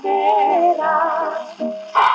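A 78 rpm shellac record of a 1940s Italian song playing on a gramophone. Voices in close harmony hold the long wavering notes of the closing line over a dance-orchestra accompaniment, and the sound is thin, with no deep bass.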